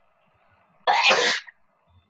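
A single short, sharp burst of breath noise from a person, about a second in, lasting half a second.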